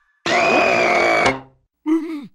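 A cartoon character's loud vocal cry lasting about a second, with a steady high tone through it, then fading out. A short falling vocal sound starts near the end.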